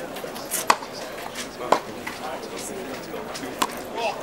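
Tennis balls struck by racket strings in a practice rally: three sharp pops, the first two about a second apart, the third about two seconds later, over a murmur of spectators' voices.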